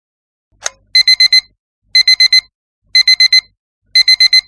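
Digital alarm clock beeping in groups of four quick beeps, one group a second, after a short click.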